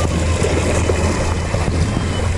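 Steady low rumble with an even hiss over it: moving water around inner tubes floating on a lazy river.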